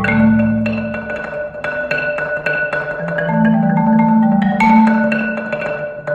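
Solo Yamaha concert marimba played with four mallets: a quick, continuous stream of struck notes ringing over sustained low notes, the bass line shifting about halfway through.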